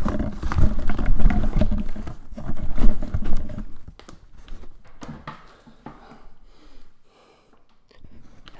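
Handling noise as a microphone is fitted into a foam-lined cardboard box: loud, irregular rubbing, scraping and thumping for about four seconds, then a few faint knocks and clicks.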